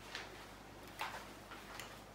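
A few faint, short ticks of a thin stir stick against small plastic paint cups as acrylic paint is mixed and handled, over low room hum.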